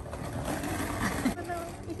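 Skateboard wheels rolling over a concrete slab with a small dog riding the board: a rough rolling rumble for about the first second and a bit, then it fades.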